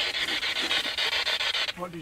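Handheld spirit box sweeping through radio frequencies: a steady hiss of radio static chopped into a rapid, even stutter, cutting off suddenly near the end.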